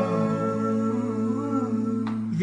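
Male vocal group singing a cappella, holding one long chord in harmony over a steady low bass note, with an upper voice moving briefly near the middle.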